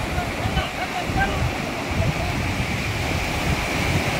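Sea surf washing in over a rocky shoreline, with wind rumbling on the microphone. Faint distant voices sound through the noise in the first second or so.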